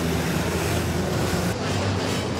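City street traffic: a steady low engine rumble under a loud, even rushing noise.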